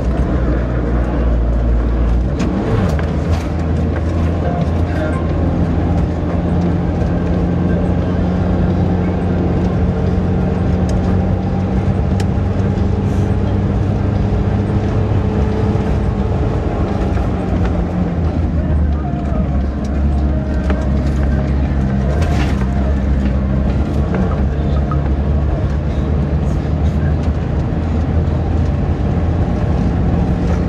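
Off-road vehicle driving over a desert sand track, heard from inside the cabin: a steady engine drone with tyre and road noise, shifting slightly in pitch around the middle.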